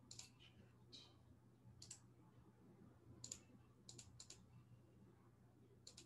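Near silence broken by faint, irregular clicking at a computer: single clicks and a quick run of three, over a faint steady low hum.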